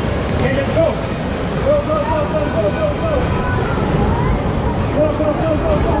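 Rushing water and a steady rumble as an inflatable raft tube slides down an enclosed water slide, with wavering voices over it.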